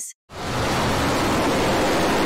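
Rocket Lab Electron rocket lifting off: a loud, steady roar from its first-stage engines, fading in just after the start.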